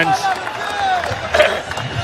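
Cricket stadium crowd noise: spectators cheering and shouting, with single voices calling out over the general hubbub.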